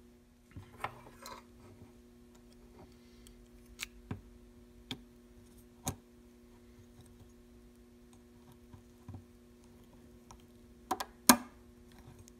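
Scattered small metal clicks and taps as an aluminium cage plate is worked onto the spring housing of a Shimano Deore XT M735 rear derailleur, ending near the end in a quick run of sharper clicks, the loudest one the cage seating onto the spring pin. A faint steady hum lies underneath.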